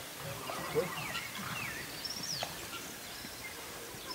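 Birds chirping in short sweeping calls, one falling steeply about two and a half seconds in, over soft, dull hoofbeats of a horse trotting on sand.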